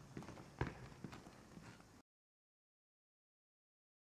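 Faint footsteps, a few soft irregular taps, then total silence from about halfway through.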